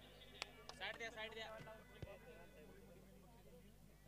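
Near silence, with faint voices in the first two seconds and a couple of faint clicks.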